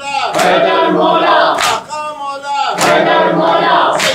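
A group of men chanting a noha loudly in unison, led by one voice at the microphone, with a sharp stroke of chest-beating (matam) about every 1.2 seconds, three times.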